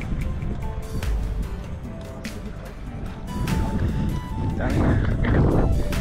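Background music with a few held notes, over wind rumbling on the microphone. Voices come in louder near the end.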